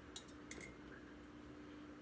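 Near silence with a few faint light clicks in the first half second: a silver starburst ornament touching a glass cylinder. A faint steady hum runs underneath.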